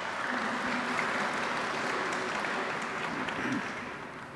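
Audience applauding in a hall, a steady spread of clapping that dies away near the end.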